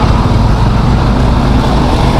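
Steady low rumble of a motorcycle engine and heavy-vehicle traffic, with a bus and a truck running close alongside.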